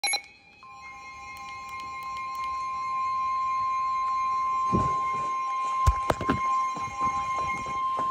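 NOAA weather radio sounding the steady 1050 Hz warning alarm tone for a severe thunderstorm warning. The tone starts about half a second in and grows louder over the first few seconds. In the second half it holds steady under a few sharp knocks and rumbles from the handset being handled.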